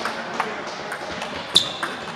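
Table tennis rally: a plastic ball clicking off the rackets and the table, several hits. The loudest comes near the end and leaves a short ringing ping.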